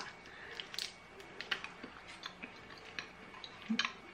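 Faint mouth sounds of biting and chewing a chewy Airheads taffy bar, with scattered small clicks, and a short murmur near the end.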